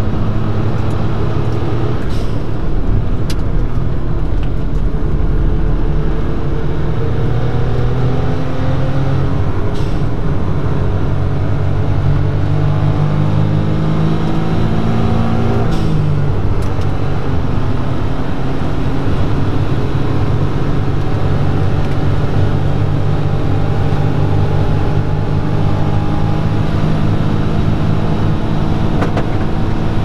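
Suzuki Cappuccino's turbocharged three-cylinder engine heard from inside the cabin, pulling under full acceleration along a straight with its pitch climbing. About halfway through the pitch drops sharply at an upshift, then climbs again as the car keeps gaining speed.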